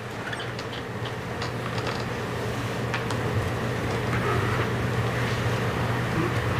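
Steady low hum and hiss of courtroom room tone picked up by the open courtroom microphones, with a few faint clicks and rustles.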